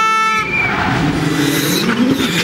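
A steady horn blast, like a spectator's air horn, cuts off about half a second in; then a rally car's engine is heard coming closer at speed, its note shifting as it drives.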